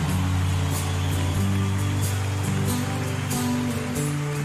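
A live country band playing the slow instrumental intro of a ballad: long held low notes that change every second or so, with light cymbal taps, over the hiss of audience applause.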